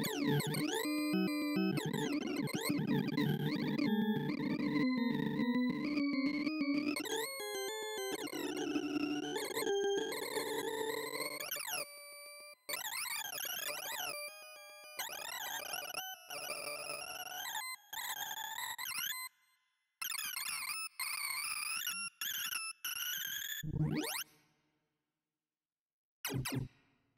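Synthesized beeping tones from a sorting-algorithm visualizer, each pitch following the value of the array element being read or written. They make a dense warble of gliding and stepping pitches as a branchless pattern-defeating quicksort works through 2,048 numbers, breaking into short stretches with gaps partway through. Near the end comes one quick rising sweep as the finished array is checked, then the sound stops.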